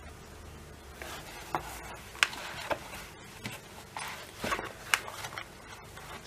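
A fabric roll-up pouch of Wera Kraftform Micro screwdrivers being handled and laid flat, with rustling and several sharp, irregular clicks from the screwdrivers.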